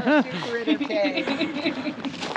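A short laugh, then quieter talking voices.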